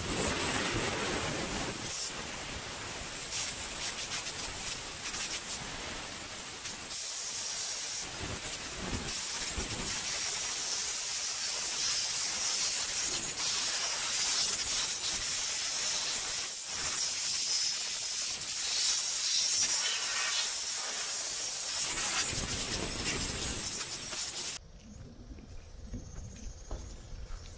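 Compressed-air dust-blower guns on coiled hoses hissing as they blow dust off hiking shoes and clothes, the hiss rising and falling in strength. It stops abruptly near the end.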